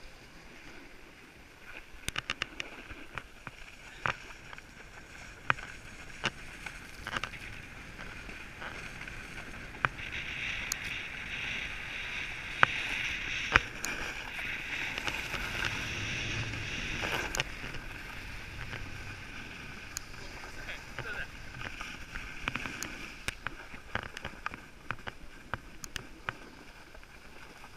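Skis or snowboard sliding over packed snow: a steady scraping hiss that grows loudest about halfway through as the ride speeds up, then eases, with scattered sharp clicks.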